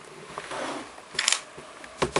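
A laptop being shifted and turned on a wooden desk by hand: a soft scraping rustle, then a short knock a little over a second in.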